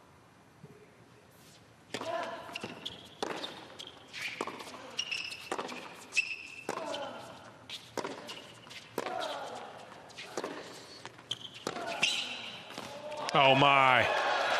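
A hard-court tennis rally: the serve, then racket strikes on the ball about once a second, with players grunting on their shots and brief high shoe squeaks. It ends in a loud shout of celebration as the match point is won.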